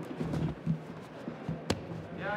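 A few dull thuds in the first second and one sharp knock near the end, over a low steady hum, from fighters grappling on the canvas against the cage.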